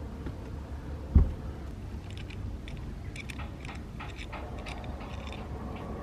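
Scattered small clicks and rubbing of rope and rigging fittings being handled as a rope lashing is taken off the forestay, over a steady low rumble.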